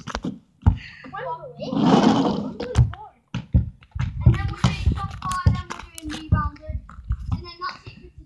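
Indistinct children's voices talking, with scattered knocks and a brief rush of noise about two seconds in.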